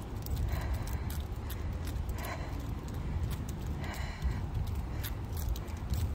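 Walking sounds on asphalt: light clicks and jingling from a dog's collar and rope leash, over a steady low rumble on the phone's microphone.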